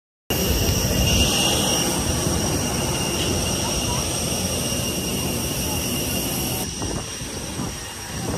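Jet airliner's turbine running steadily on the apron: a loud rush with a high, steady whine above it. The whine thins and the sound drops slightly about seven seconds in.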